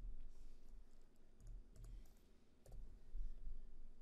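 A few faint computer keyboard keystrokes as a date is typed into a form field, clustered around the middle.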